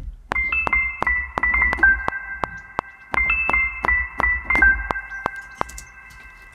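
Omnisphere 'Drops of Tines 1' patch from the Keyscape Creative library, an electric piano layered with a granular version of itself, played by hand on a keyboard: a short descending phrase of high notes over low notes, played twice.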